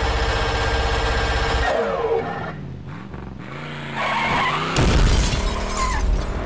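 Sound effects for an animated logo: a steady, engine-like drone that winds down about two seconds in, then a loud shattering crash about five seconds in.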